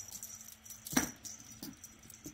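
Wand cat toy tapping and rattling lightly as it is flicked and dragged over carpet into a fabric box, with one sharp tap about halfway through.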